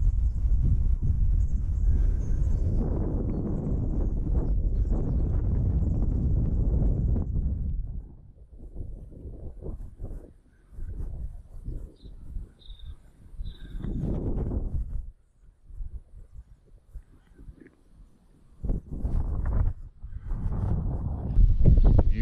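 Wind buffeting the camera microphone: a steady low rumble for about the first eight seconds, then breaking up into irregular gusts with quiet gaps between.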